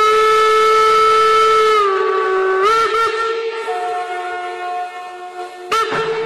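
Train whistle blowing a long, loud blast whose pitch creeps slightly up, then drops about two seconds in. It gives a couple of quick warbling toots and then holds on more quietly, with a sharp click shortly before the end.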